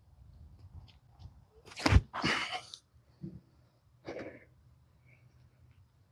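A disc golf drive: light scuffs of the run-up, then a sharp thump and a forceful breathy grunt of effort about two seconds in as the disc is thrown. A shorter, fainter breath follows about four seconds in.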